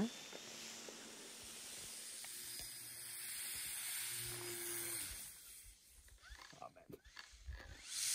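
Faint steady hiss with a low hum in the middle. From about five seconds in come irregular crunching and swishing sounds of skis and a ski pole moving through snow.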